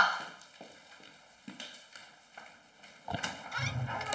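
Footsteps on a hard indoor floor, a few spaced steps, then a sharp click of a door latch about three seconds in as a door is opened.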